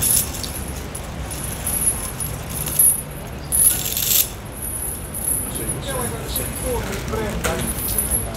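Busy pedestrian street ambience: a steady low traffic rumble, passers-by talking in the second half, and a light metallic jingling.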